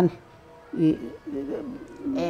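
A woman's voice speaking softly after a short pause, quieter than the talk around it.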